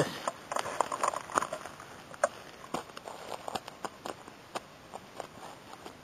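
A hiking boot treading on the forest floor, crunching twigs and pine needles in a run of irregular crunches that are thickest in the first couple of seconds. The boot is pressing doused wood-stove ashes into the ground.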